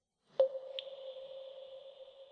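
A bell-like tone struck once, ringing on with a long, steady sustain, and a higher ping added just after it.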